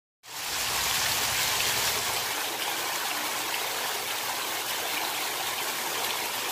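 A fountain's ring of water jets and central bubbler splashing steadily into its pool, starting abruptly just after the beginning.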